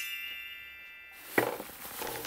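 A bright, glockenspiel-like chime sound effect from the edit rings out and fades over about a second. Near the end comes a sudden short knock, followed by faint rustling.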